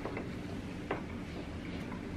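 Quiet room tone: a steady low hum, with a couple of faint clicks just after the start and about a second in.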